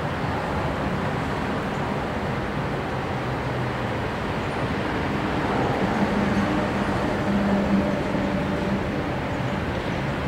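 Steady road traffic noise, with a box truck's engine hum swelling about halfway through as it drives past.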